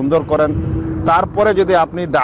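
Only speech: a man lecturing in Bengali, talking continuously.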